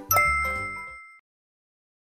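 A single bright bell-like ding, an editing sound effect for a section title card, strikes just after the start and rings out over the tail of the background music. Both fade, and the sound cuts off abruptly to dead silence a little over a second in.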